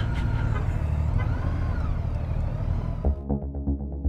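Motorcycle engine running at low speed as the bike creeps forward, with a faint wavering tone in the background. About three seconds in, it cuts suddenly to electronic background music with a steady beat.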